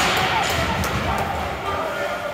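Ice hockey rink sound: indistinct spectator voices over the general noise of play, with several sharp clacks of sticks on the puck and ice.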